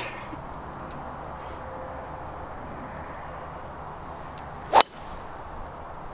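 A golf driver striking a teed ball: one sharp, loud crack near the end, over a faint steady outdoor background.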